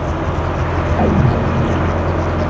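Small motorboat's engine running steadily, a low rumble.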